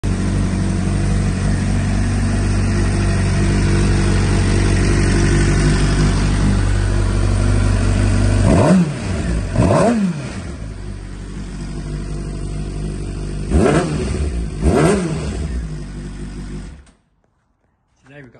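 2007 Suzuki GSX-R600's inline-four engine idling, with four quick throttle blips, in two pairs about a second apart. It cuts off suddenly near the end.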